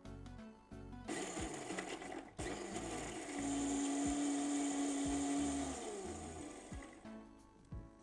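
Electric mixer grinder running, blending wet beetroot pesto in its steel jar. It comes on about a second in for a short burst, stops briefly, then runs again for about four seconds and winds down near the end.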